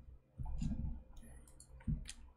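Quiet, sparse clicks from a computer keyboard and mouse, with a short low hum about half a second in.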